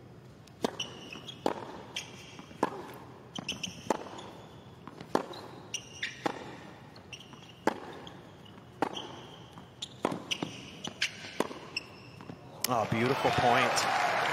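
Tennis rally on a hard court: sharp pops of the ball off racket strings and off the court, roughly one every half second to a second. About twelve and a half seconds in, crowd applause breaks out as the point is won.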